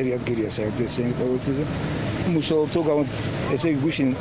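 A man talking in an outdoor interview, with a steady high-pitched whine and a low engine hum behind his voice.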